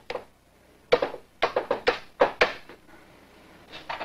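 A rifle being handled and readied to fire: a quick run of about seven sharp clicks and knocks, starting about a second in and spread over roughly a second and a half.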